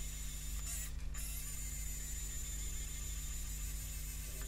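Handheld 3D printing pen's filament-feed motor running steadily as it extrudes, a low even hum.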